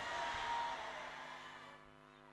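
Soft background music of a few steady held notes, fading away to near silence near the end.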